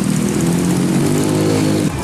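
A motor vehicle engine running steadily, its pitch easing slightly lower in the second half before it cuts off abruptly just before the end.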